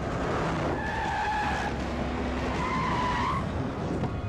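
A vehicle skidding, with its engine and tyre noise running throughout and two short tyre squeals, the first about a second in and a slightly higher one near the end.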